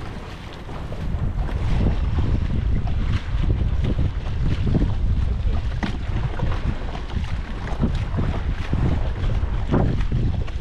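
Wind buffeting the microphone, under splashing and sloshing water as a person wades through shallows towing a kayak, with short splashes about once a second.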